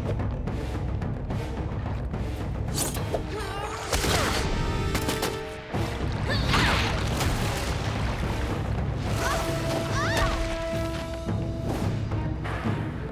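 Animated fight-scene soundtrack: a dramatic music score under repeated crashes and impacts, with a sharp hit about four seconds in.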